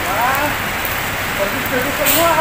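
Steady hiss of falling rain, with faint voices talking under it.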